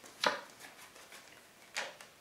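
Tarot cards being laid down on a wooden tabletop: two brief taps, about a second and a half apart.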